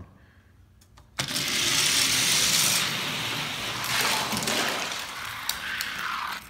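Die-cast toy cars released at the start gate with a sharp snap about a second in, then rolling down a toy gravity race track with a loud, steady rattling rumble for about five seconds, dying away near the end.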